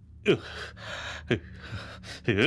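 A man gasping in pain: two short, sharp gasps about a second apart, each falling in pitch.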